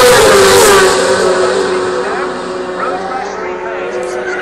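A racing sidecar outfit's 600 cc four-stroke engine passing at full speed. It is loudest in the first second, its note dropping in pitch as it goes by, then fading.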